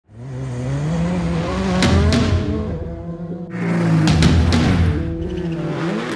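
Race car engines revving over a music track. The engine note climbs in pitch near the start, and a fresh burst of engine and tyre noise comes in about three and a half seconds in.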